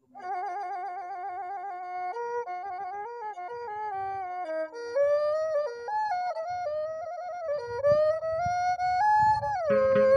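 Cambodian traditional ensemble music opening with a solo flute-like melody, wavering vibrato and sliding between notes. Softer low accompaniment joins from about five seconds in.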